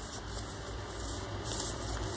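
Pages of a thick handmade paper-and-card journal being turned and pressed flat by hand: a soft rustle of paper with a brief swish near the end, over a steady low hum.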